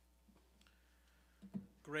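Low steady hum and room tone with a few faint clicks, then a brief vocal sound from a man at a pulpit microphone and the start of his speech near the end.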